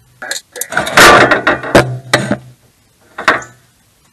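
Sheet-metal cover panel under a pop-up camper being worked loose by hand, clattering and scraping with a burst of sharp knocks, loudest between about one and two and a half seconds in. A single sharp knock follows a second or so later.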